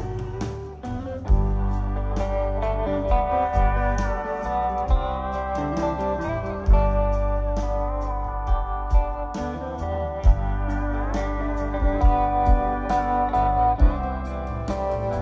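Live band playing an instrumental break: a lead guitar line with gliding notes over bass and drums.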